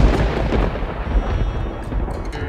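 Thunder rumbling loudly: a deep, rolling rumble that breaks in suddenly and is loudest near the start.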